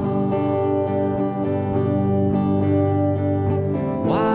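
Les Paul-style electric guitar strumming chords, with repeated strokes ringing on between them and a chord change to A minor near the end.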